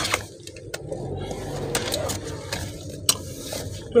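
Low running noise inside a car's cabin as the car is manoeuvred slowly into a parking bay, with a few light clicks spread through it.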